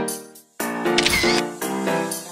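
Phone camera shutter sound effect, one short click-and-whir about a second in, over upbeat piano background music that briefly stops just before it.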